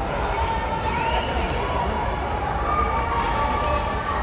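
Crowd of spectators talking and calling out at once, a steady mass of voices echoing in a large indoor sports hall.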